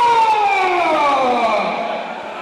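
A man's long, loud cry sung into a microphone, held high and then sliding steadily down in pitch until it fades about a second and a half in. It is a samba singer's opening call before the samba starts.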